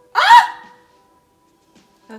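A single short, loud vocal sound from a woman, like a hiccup or a yelp, about half a second long, its pitch rising and then falling; a faint held note of background music runs underneath.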